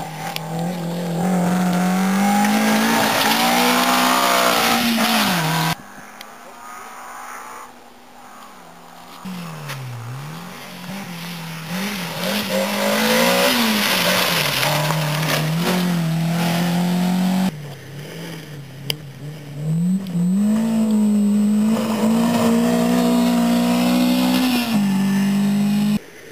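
Three rally cars, one after another with abrupt cuts between them, each engine revving hard, dipping in pitch at gear changes and corner braking, then pulling up again. The middle car, a Renault Clio, starts faint and grows loud as it comes close.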